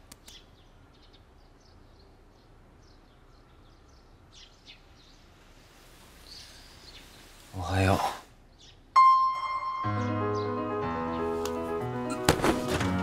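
Faint bird chirps over quiet room tone, then a short voice sound about eight seconds in. About nine seconds in, a sudden ringing tone sounds and music starts, carrying on to the end.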